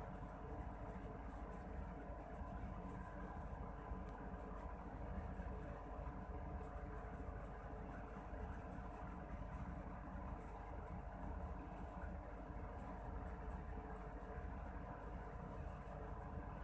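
A steady low background hum, unchanged throughout, with no distinct events standing out.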